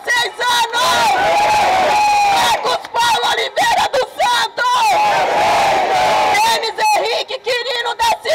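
A crowd of protesters chanting and shouting together. Many voices rise and fall in long calls, with no break.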